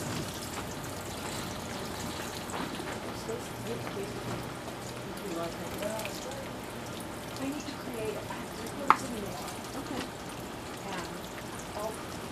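Water showering steadily from the rose of a plastic watering can onto a tray of seedlings, soaking the plug cells before transplanting. A single sharp click sounds about nine seconds in.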